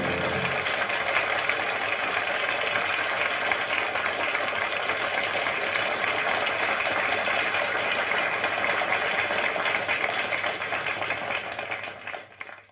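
A steady buzzing hiss with a faint low hum under it, left after the band stops playing. It fades and dies away right at the end.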